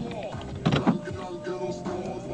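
Background music inside a car, with a car door shutting about three-quarters of a second in.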